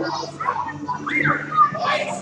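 Children's shouts and high-pitched squeals during active play, with a steady low hum underneath.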